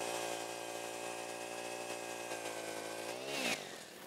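Eskimo 40cc high-compression propane ice auger engine running at a steady high speed, its pitch rising briefly near the end before it cuts off.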